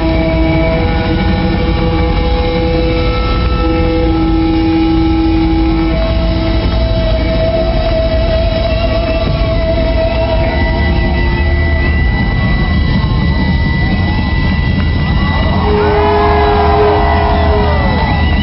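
Live rock band playing loud, with long held notes over a steady low rumble of drums and bass. Near the end come bending, gliding notes.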